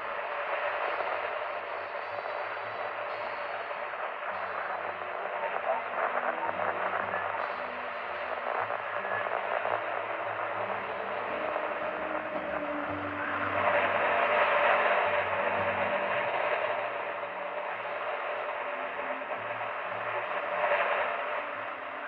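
Old-time radio audio heard through heavy static: a steady, narrow hiss under which a faint voice and faint low notes that step in pitch come and go. The static swells louder about two-thirds of the way through.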